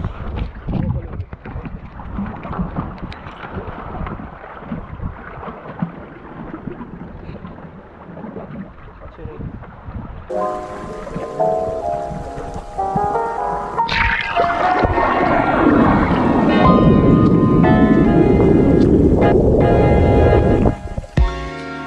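Wind and water noise on a small sailboat, gusting unevenly, for about ten seconds; then background music cuts in and grows louder toward the end.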